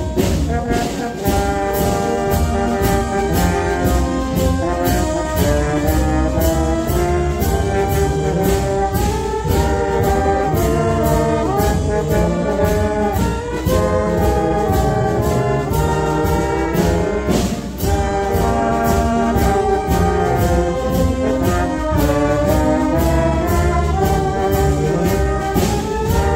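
A band playing a march in rehearsal: trumpets and trombones carry the tune over a steady, evenly repeated percussion beat.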